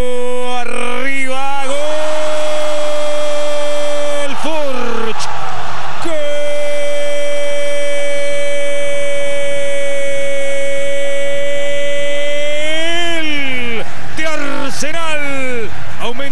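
A football commentator's goal cry, 'gooool': a held note of about two seconds, then one long note on a steady pitch for about six seconds, with short shouts either side.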